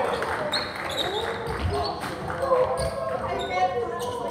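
Several voices talking and calling out at once in a gym, with a volleyball bouncing on the wooden floor a few times.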